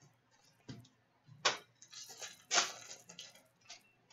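Trading cards being handled: a few short taps and brushing swishes as a card is laid down on a pile and the next card is slid off the stack.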